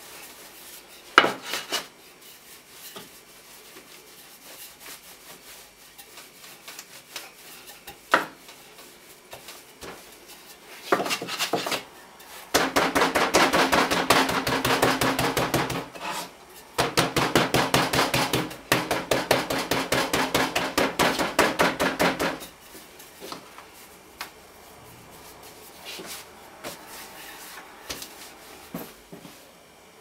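A wooden rolling pin rolled back and forth over laminated croissant dough on a floured marble worktop, in two loud stretches of rapid rasping strokes in the middle. A couple of single knocks come before them, from the pin against the worktop.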